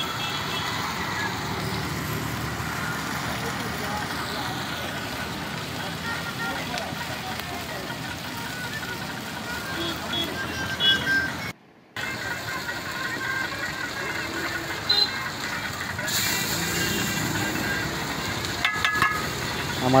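Masala fish frying in oil on a large flat iron griddle, a steady sizzle, broken off briefly a little before the middle. Near the end, a few sharp clicks from the metal spatula on the griddle.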